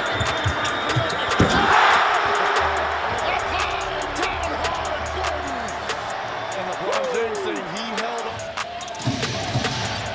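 Background music over basketball game audio, with arena crowd noise swelling into a cheer about two seconds in.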